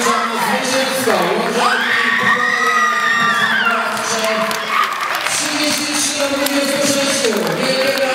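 A group of women's voices cheering and shouting together in a large sports hall, with a long high held shout from about one and a half to four seconds in.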